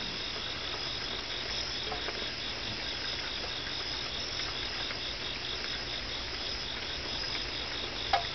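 Night insects chirping in a steady chorus of evenly repeating pulses, over a faint low hum.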